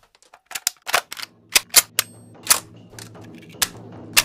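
Sharp, irregular mechanical clicks and clacks from a Sony camcorder's cassette mechanism being worked, about ten in all. A low steady hum builds underneath from about halfway.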